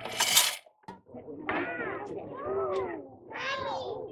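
A short metallic clatter right at the start, like coins dropping through the coin slot of a coin-operated tower viewer. After a brief gap, a child's high voice makes long, sing-song calls that rise and fall in pitch.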